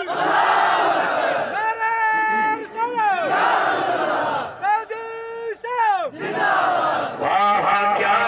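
A man's voice over loudspeakers calls out a slogan in long held notes, twice. Each call is answered by a huge crowd shouting back together, three crowd responses in all, in a call-and-response chant.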